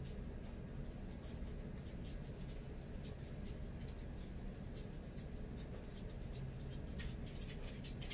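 Small scissors snipping as they trim the edges of a sewn cloth face mask: quick, irregular snips, a few a second, over a low steady hum.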